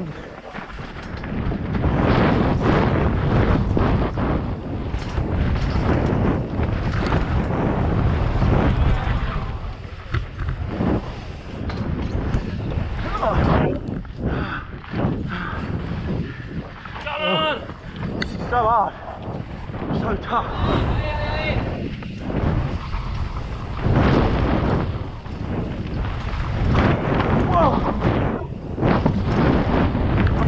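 Wind buffeting a helmet-mounted action-camera microphone while a mountain bike descends a rough dirt trail at speed. The tyres rumble over rocks and roots, and the bike rattles with frequent knocks from the bumps.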